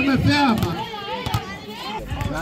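Young voices calling out, loudest in the first moment, with one sharp knock a little over a second in.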